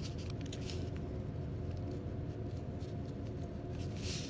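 Faint rustles and light ticks of hands handling a glass capillary tube and paper towel over a TLC plate, mostly in the first second, over a steady low hum.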